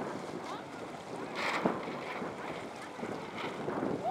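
Wind buffeting the microphone over small waves lapping on open lake water, with a brief louder rush about a second and a half in.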